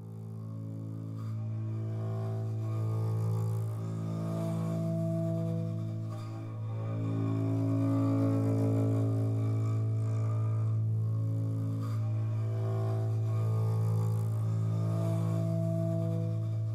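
Background music: a low, sustained drone with slowly shifting overtones, swelling in over the first couple of seconds and then holding steady.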